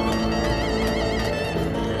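Background music: a wavering melody over held chords, with a light steady beat.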